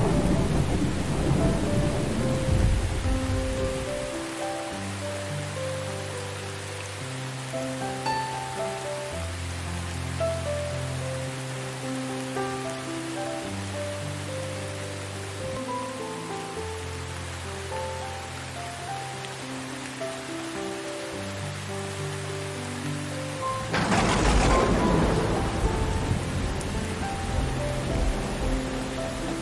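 Thunderstorm with steady rain: a thunder rumble dies away over the first few seconds, then a sudden loud thunderclap about 24 seconds in rolls on to the end. Slow, soft piano notes play over the rain throughout.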